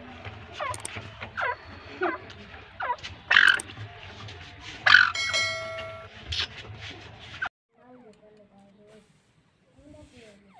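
Captive partridges (teetar) calling: a run of short, sharp calls that sweep down in pitch, coming every half second to second and a half, over a low steady hum. The sound cuts off suddenly about three-quarters of the way through, leaving only faint calls.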